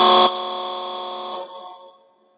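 Electronic horn sound set off from a push-button device: a chord of steady tones, very loud at the start, dropping a little after a quarter second and fading out near the end.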